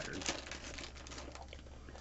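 Thin plastic bag crinkling as a small pin is worked out of its packaging: a run of light crackles that thins out toward the end.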